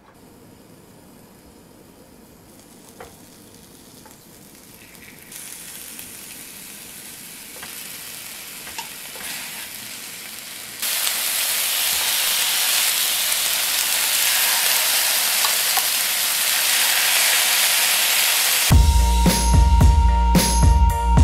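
Beef large intestine and tripe sizzling on a hot grill pan, the sizzle growing louder in steps as more pieces go down, with a few light clicks of metal tongs. Music comes in near the end.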